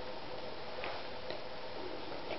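A golden retriever puppy and a kitten play-wrestling on a bedsheet: faint rustling with a couple of soft ticks near the middle, over a steady background hiss.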